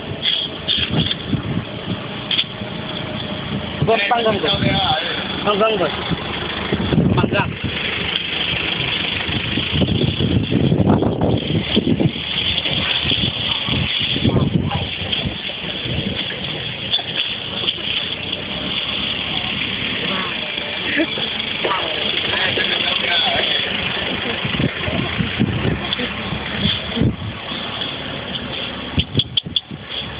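People talking over steady vehicle noise.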